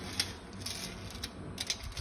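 Faint scattered clicks and light rattles from a steel tape measure being handled against the steel frame of a homemade spring compressor.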